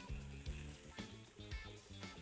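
Faint sizzling of vegetables frying in ghee as zucchini pieces go into the pot, with a few soft knocks about every half second as pieces land, over quiet background music.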